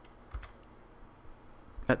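A few faint computer-keyboard key clicks, the clearest about a third of a second in.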